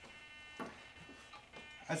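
Faint steady high-pitched whine from the powered-up model plane's digital servos, normal for digital servos holding position, with a couple of soft knocks as the plane is handled.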